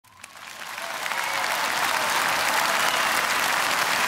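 A large seated audience applauding, swelling up over the first second and then holding steady.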